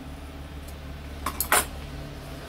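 Two brief, light handling noises a little past the middle, as hands work a small piece of leather, over a steady low hum.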